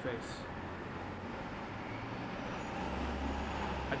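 Steady low hum of city traffic, with a deeper drone coming in near the end.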